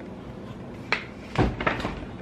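A light click about a second in, then a heavier thump with a brief rattle after it.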